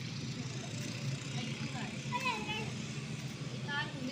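Steady low background rumble with faint voices breaking in briefly a couple of times.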